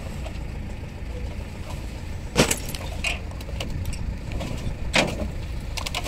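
A heavy machine's engine runs steadily while glass liquor bottles crack and clink as they are crushed, with sharp cracks about two and a half, three and five seconds in.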